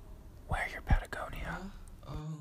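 A person whispering a few words, with a brief low thump a little before the middle.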